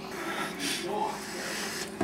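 Quiet breathing and a brief, faint vocal sound from a man, over a low room hiss.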